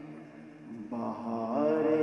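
A man singing an Urdu naat unaccompanied into a microphone: a held note fades away, and about a second in he starts a new line with long, wavering, drawn-out notes that swell in loudness.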